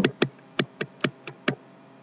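A run of about seven sharp, uneven clicks from a computer mouse over a second and a half, made while a document is scrolled on screen.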